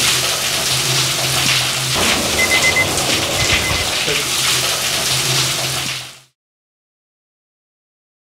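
Decontamination douse shower spraying onto people's waterproof coats and hats: a steady hiss of falling water over a low steady hum, stopping abruptly about six seconds in.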